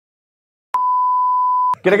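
An edited-in electronic beep: one steady pure tone lasting about a second, starting after a moment of dead silence and cutting off abruptly just before speech resumes.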